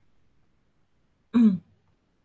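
A woman's single short hesitation sound, 'ừ' (like 'mm'), falling in pitch, about a second and a half in, with near silence around it.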